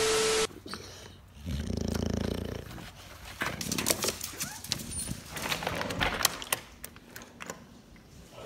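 A short glitchy static sound effect with a steady tone opens. An American bully dog then gives a low grumbling vocalisation of about a second, followed by a few seconds of sharp, irregular clicks and knocks as it scrambles about in the tub.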